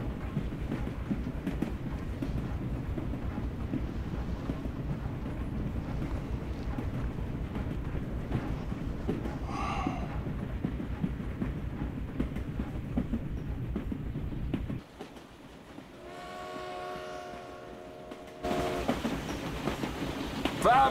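Steam train wheels clattering rhythmically over the rail joints under a steady rumble, heard from inside a passenger car. About fifteen seconds in, the rumble drops away and a steam locomotive whistle blows one chord for about two seconds, then the louder running of the train comes back.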